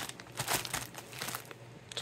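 Thin plastic bread bag crinkling as it is spun to twist its neck closed, the rustle strongest in the first half second or so and fainter after.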